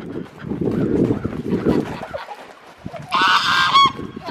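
Footsteps rustling and crunching on wood-chip ground, then near the end a single loud, harsh, honking squawk from the poultry being chased, nearly a second long and dropping in pitch at its end.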